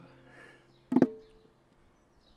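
A sharp double knock about a second in, followed by a short ringing note that dies away quickly.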